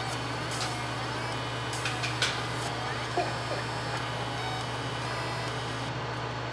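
Laser engraver running with a steady low hum while it engraves a black metal card, with a few faint ticks.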